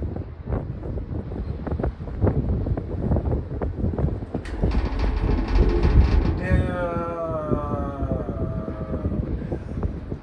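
Disney Skyliner gondola cabin rumbling and knocking as it rides the cable. About halfway through there is a fast rattle, then a drawn-out whine that slowly falls in pitch.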